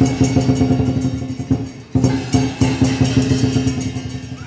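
Chinese dragon dance percussion: a drum beaten in a fast, driving rhythm with clashing cymbals ringing over it, dropping away briefly about halfway through and coming back in loudly.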